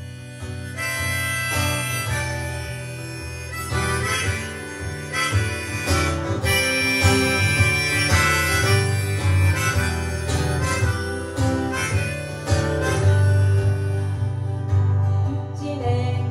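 Tombo harmonica playing an instrumental break over acoustic guitar accompaniment. It holds one long high note from about six to eight seconds in.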